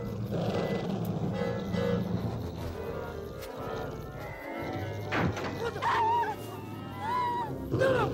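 Low, droning horror-film score, joined from about five seconds in by a few sharp hits and wavering high-pitched cries.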